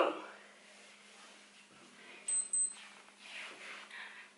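Quiet room with a steady low hum. About two seconds in come two short high-pitched squeaks, followed by faint breathing.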